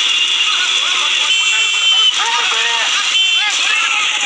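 Excited voices shouting over a loud, steady din, with a high steady tone sounding twice, once for under a second after about a second and again briefly near the end.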